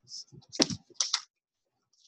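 Tarot cards being handled and shuffled: three short, crisp clicking, riffling bursts in the first second or so.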